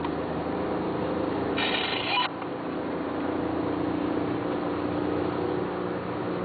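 Steady engine and road noise inside a car's cabin at highway speed, with a low drone. About one and a half seconds in comes a short, loud, higher-pitched buzzy sound lasting about half a second.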